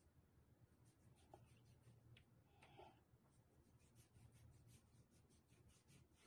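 Near silence with faint, repeated rubbing strokes of a hand spreading lotion over the skin of the forearm, coming closer together in the second half.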